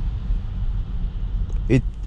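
Steady low road rumble heard inside the cabin of a Tesla electric car as its tyres run over a wet, slushy winter road.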